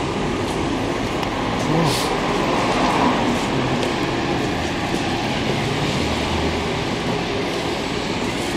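Steady background din of indistinct voices over a continuous low rumble, typical of a busy shop open to the street.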